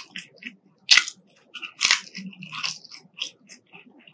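A person chewing McDonald's french fries, with a sharp crunching bite about a second in and another near two seconds, and smaller chewing clicks in between.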